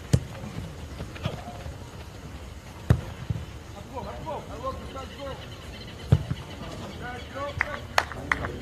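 A football being kicked during play: about half a dozen sharp thuds at irregular intervals, the loudest about three and six seconds in, with players shouting in the distance.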